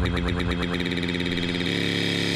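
Electronic dance music: a synthesizer chord pulsing rapidly and evenly, with the deep bass dropping away about a second in.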